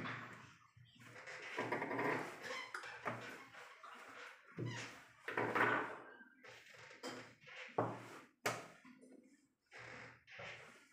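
Plastic chess pieces set down on a roll-up board and chess clock buttons pressed: a sharp knock right at the start and two more close together about eight seconds in, with softer rustling and shuffling between.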